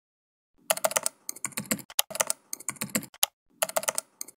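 Typing on a computer keyboard: bursts of rapid key clicks with short pauses between them, starting about half a second in.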